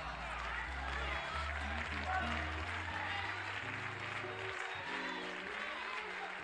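Church band playing sustained chords over a bass line that steps to a new note about every second, under congregation voices and scattered applause.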